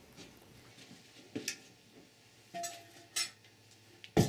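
A few light metallic clinks and knocks from a 46RE transmission's aluminium overdrive housing being handled and turned over: a pair of taps about a second and a half in, a short ringing clink past halfway, and another tap soon after.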